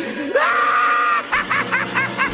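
Maniacal villain's laughter: the voice rises into a high shriek held for under a second, then breaks into rapid, high-pitched "ha-ha" bursts.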